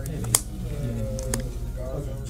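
Indistinct voices in a room over a steady low hum. A sharp click comes about a third of a second in, and a fainter one follows about a second later.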